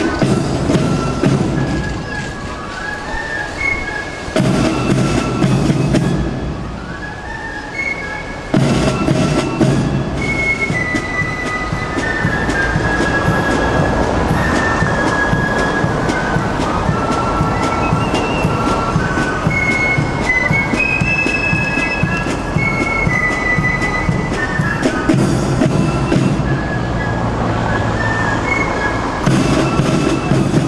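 British military marching band playing brass and drums: a melody of held brass notes over a regular drum beat.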